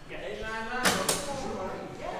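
Arcade boxing machine's punch ball dropping down into its ready position with a sharp clunk about a second in, followed quickly by a second knock.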